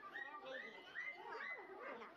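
Overlapping high-pitched children's voices and chatter, several at once, with no clear words.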